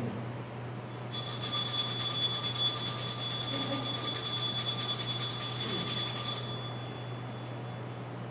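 Altar bells shaken in a continuous bright, high ringing for about five seconds during the elevation of the chalice, marking the consecration. The ringing stops and dies away near the end.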